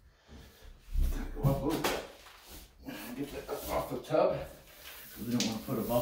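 A tub surround wall panel being handled and set against the wall, with a few sharp knocks as it is pushed into place, under a man's low, mumbled voice.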